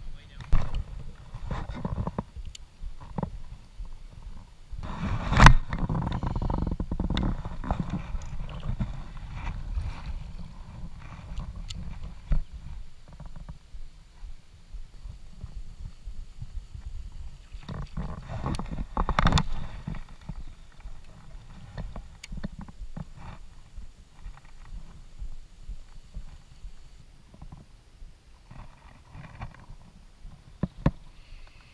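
Wind buffeting the microphone of a camera mounted on a plastic fishing kayak, a steady low rumble, with scattered knocks and light splashes from paddling and gear against the hull. Two louder bursts come about five seconds in and again just before twenty seconds.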